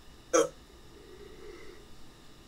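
A voice actor makes one short, sharp vocal sound about a third of a second in, then a faint, low hum of the voice.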